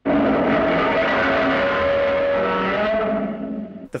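Godzilla's original 1954 roar, a screeching cry made by drawing a resin-coated leather glove along double bass strings. One long roar that starts suddenly and fades near the end.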